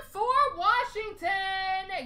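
A high-pitched voice singing or vocalizing without clear words, with pitch slides in the first second and then one long held note.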